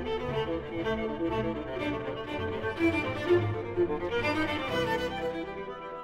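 Viola with orchestral strings playing a passage of classical music, notes moving continuously.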